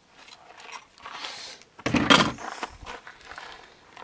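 Handling noises as an AR-style rifle is lifted and moved: rustling, then a clunk about two seconds in as it is set down on a plastic folding table.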